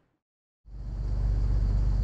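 Near silence for just over half a second, then a motor boat's engine fades in and runs with a steady low hum, heard from on board.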